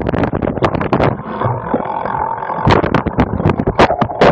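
Rough, irregular rattling and knocking of a cyclocross bike and its mounted camera over bumpy dirt, with the bike coasting and not pedalled. The knocks ease into a smoother stretch about a second in, then pick up again before the end.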